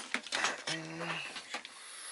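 Light clicks and clatter of an inverter circuit board being turned over by hand and stood on its edge on a thin tin sheet.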